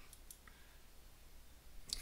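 A few faint computer mouse clicks in the first half-second, over a low steady hum.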